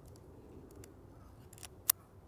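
Leica M6 film camera being handled: a few faint clicks, then two sharper metallic clicks near the end, the last the loudest.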